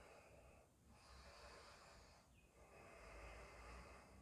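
Near silence: room tone with faint, slow breathing, two soft breaths in a row.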